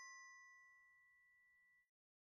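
Fading tail of a single bell-like ding from a studio logo sting: one clear ringing tone that dies away within about two seconds.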